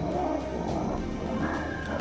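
Two male lions fighting, growling at each other, with background music underneath.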